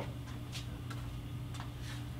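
A steady low hum with a few faint, scattered ticks.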